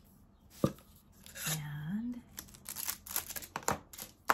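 A small cylindrical tube package being opened and handled: a sharp click a little over half a second in, then a run of quick, scratchy tearing and rustling clicks through the second half.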